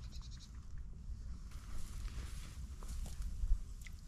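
Steady low rumble of wind on the microphone, with a few faint clicks and a brief fine ticking near the start.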